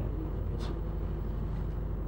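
Steady low background hum, with a brief soft hiss about half a second in.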